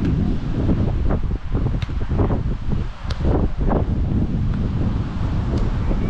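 Wind buffeting the microphone: a loud, gusting low rumble, with a few faint clicks.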